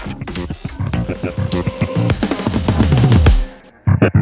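Electronic dance music with busy, choppy drums and repeated falling bass glides. The track cuts out briefly near the end, then comes back in loud.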